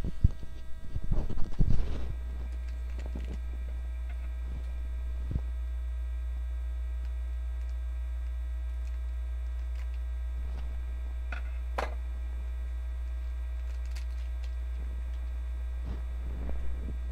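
Steady low electrical mains hum in the recording, part of the stream's bad audio. Loud irregular rustling and handling noise fills the first two seconds, and a few short clicks come later.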